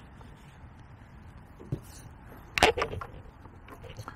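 Gear being handled in a plastic carry case: a few light clicks, then a sharper knock and clatter about two and a half seconds in as the case's tray is lifted out and set down.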